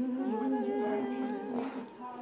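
A female voice humming long, held, slightly wavering notes in wordless worship singing.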